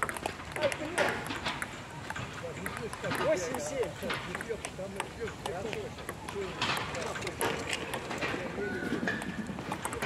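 Light clicks of a table tennis ball off paddles and the table, under background voices of people talking.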